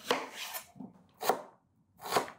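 Kitchen knife cutting through an onion onto a wooden chopping board: two strokes, about a second apart.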